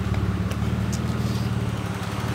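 BMW E36 engine idling steadily, its exhaust running through a muffler from an E46 parts car welded on in place of the straight pipe.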